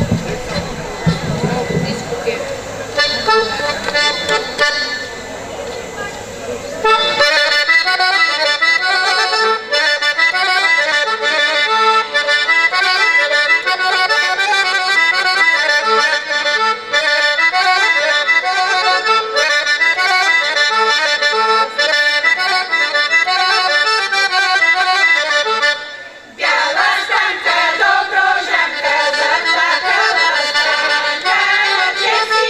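Accordion playing a folk tune. It starts softly a few seconds in and comes in fully at about seven seconds. It breaks off briefly near the end, then carries on.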